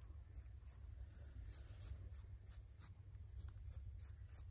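Straight razor scraping hair and stubble off a scalp in short, quick strokes, about three a second.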